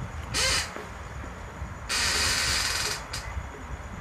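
Harsh bird calls: a short one about half a second in, a longer one lasting about a second near the middle, and a brief one soon after.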